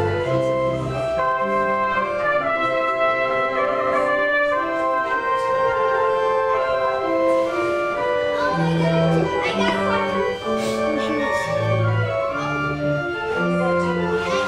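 Church organ playing a postlude: held chords in several voices over sustained bass pedal notes that change every second or so.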